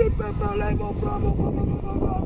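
A person talking in short syllables through the first part, over a steady low rumble of wind on the microphone.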